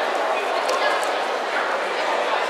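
Crowd chatter: a steady murmur of many voices at once.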